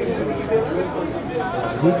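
Speech: live match commentary, with chatter behind it.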